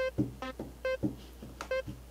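Mellotron sample playing back in a song mix as short pitched notes: three about half a second apart, then a fourth after a gap, with faint percussion ticks between them.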